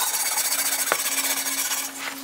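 Hand wire brush scrubbing rust off the heavily rusted steel rear carrier of a Super Cub 90 in quick, continuous strokes, giving a dense, scratchy rasp. One sharp click comes about a second in.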